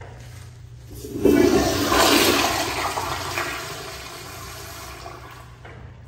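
Toto CT705E flushometer toilet flushing: a sudden rush of water starts about a second in, is loudest for the next second or so, then dies away over a few seconds.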